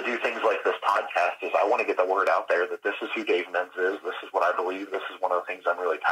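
Speech only: a man talking without pause, with a thin, phone-like sound.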